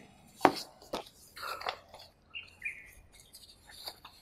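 Paper rustling and a few sharp taps as printed sheets are handled, with a couple of short, faint bird chirps around the middle.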